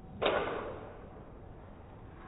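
A single sharp crack of a golf club striking a ball, with a short echoing tail that dies away within about half a second.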